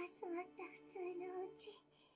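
Anime dialogue: a high-pitched female voice speaking Japanese in short phrases, its pitch rising and falling in a sing-song way. It fades out near the end.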